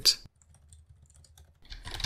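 Faint keystrokes on a computer keyboard, a few scattered clicks as a terminal command is typed.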